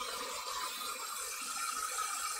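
Dyson hair dryer with a diffuser attachment running, a steady rush of blown air held against the hair.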